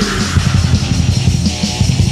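Heavy metal band playing: distorted electric guitars and bass over a busy drum kit, with no singing in these seconds.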